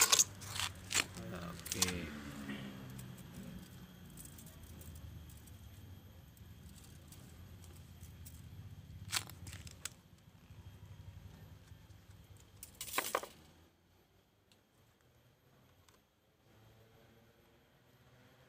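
Bonsai wire being drawn off a loose coil and wrapped around a ficus branch by hand: light metallic jangling and rustling of the wire, with a sharp rustle about nine seconds in and a louder one about thirteen seconds in.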